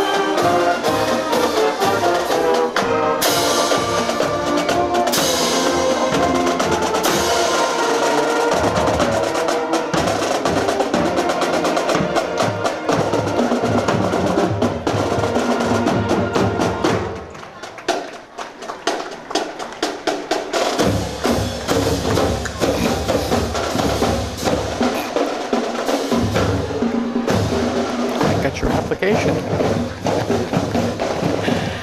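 High school marching band playing on the march. Brass and drums play together for the first several seconds, then mostly the drumline's snares and bass drums beat a cadence. The drums drop briefly past the middle and then pick up again.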